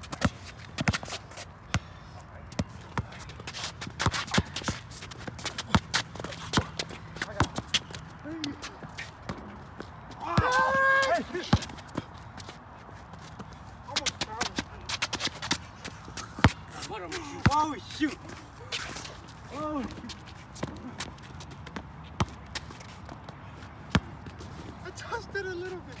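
A basketball bouncing on a concrete court, with players' feet shuffling and scuffing; the bounces are sharp and irregular. A shout about ten seconds in is the loudest sound, and a few shorter calls come later.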